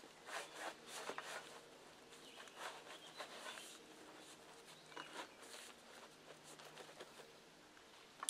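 Faint, irregular rustling and light knocks of gear being stuffed into the sides of a plastic sit-in kayak's hull.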